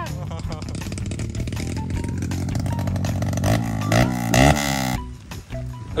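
Dirt bike engine revving hard, its pitch sweeping up and down several times in the second half, then falling away near the end.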